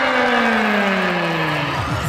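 Sound effect in a cheer routine's music mix: a long engine-like tone falling steadily in pitch over about two seconds, with a regular beat starting near the end.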